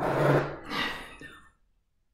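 A woman's long, breathy sigh with a little voice in it, fading out about a second and a half in.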